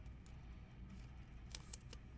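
Faint handling noise of a trading-card box being opened and cards pulled out: a few light clicks and rustles over a low steady hum.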